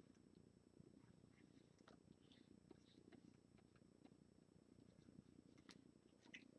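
Near silence: faint room tone with a low rumble and a faint steady high whine, broken by scattered faint ticks of a stylus tapping on a pen display.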